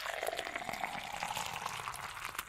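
Coffee being prepared: a steady bubbling, crackling liquid sound.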